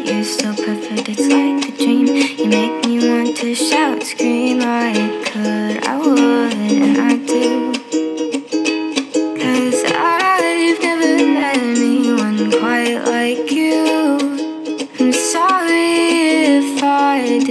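Ukulele playing chords in an instrumental passage of a soft pop song, with a melody line gliding above it.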